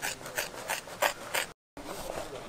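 Scissors cutting through thick tyre rubber: a run of crisp, crunching snips about three a second, with a brief break in the sound near the end.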